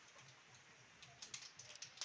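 Faint crinkling clicks of a small seasoning sachet being torn open by hand, with a few sharp ticks in the second half; otherwise near silence.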